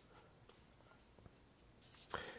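Faint sound of a felt-tip marker writing on paper, very quiet and barely above room tone.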